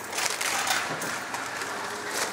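Sheets of white chip-shop paper rustling and crinkling as they are handled and folded over a tray of food, busiest in the first second.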